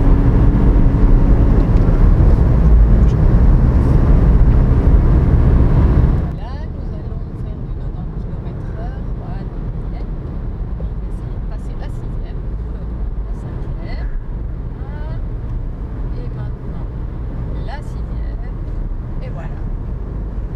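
Cabin noise of a Mini Countryman with a 1.6-litre diesel engine on the move: a loud road and tyre rumble for about six seconds, which then drops suddenly to a quieter, steady engine and road hum.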